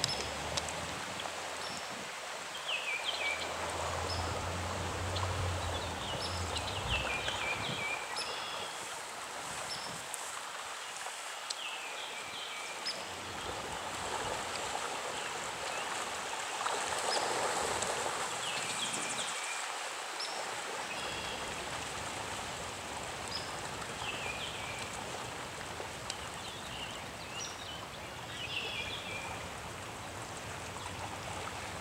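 Floodwater flowing and rippling through wetland shallows, a steady rush throughout. Over it, a bird gives short falling calls every few seconds.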